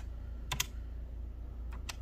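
Plastic keys of a desktop calculator being pressed as figures are added up: a few sharp clicks, one at the start, a pair about half a second in and two more near the end.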